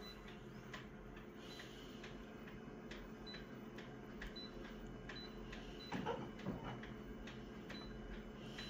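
An office copier's touchscreen control panel is tapped through its settings, each press answered by a short, high beep. Over it runs the machine's steady idle hum, with small clicks throughout. About six seconds in comes a brief, louder burst of handling noise.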